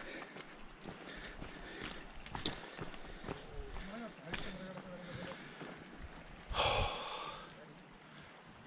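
Footsteps on a wet, muddy hiking trail with a hiker's breathing, and one louder breath or sniff about six and a half seconds in.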